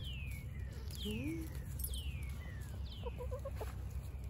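Hens calling softly as they forage: a low rising call about a second in and a short run of quick clucks past the three-second mark. Over them, a high whistled note that falls in pitch repeats four times, about once a second.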